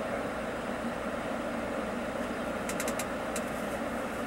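Mercedes-Benz O-500RSDD double-decker coach standing with its engine idling, heard as a steady low hum from inside the cabin. A brief cluster of light ticks comes about three seconds in.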